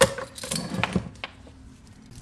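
Metal clip and hardware of a dog leash jangling and clinking as the leash is pulled out of a storage crate, starting with a sharp knock and dying away after about a second.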